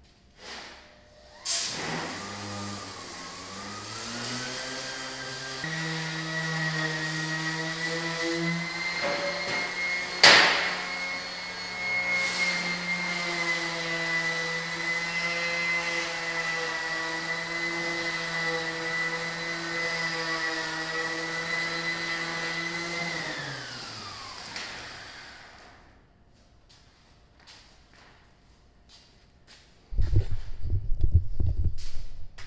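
Handheld electric sander spinning up about a second and a half in, running with a steady whine while sanding the base of a steel post, then winding down near the end. A single sharp knock about a third of the way through is the loudest sound.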